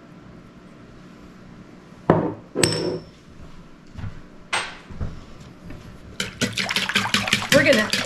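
Glass spice jars set down on a wooden counter: sharp clinks about two seconds in and again a little past four seconds. From about six seconds in, a wire whisk beats a thin egg-and-milk batter fast in a wooden bowl, the strokes rapid and steady and growing louder.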